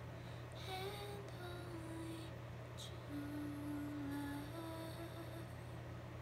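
A woman softly humming a slow melody in long held notes that step up and down, over a steady low hum.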